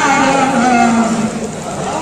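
A singer's voice holding one long note that slides slowly downward and fades out a little past a second in.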